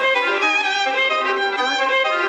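Background music led by a bowed string melody of held notes changing in pitch.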